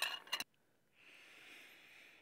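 Several sharp metal clinks in the first half-second, a fork knocking against a dish or container. About a second in comes a soft breathy hiss lasting just over a second.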